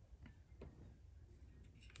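Near silence: room tone with a few faint, light ticks.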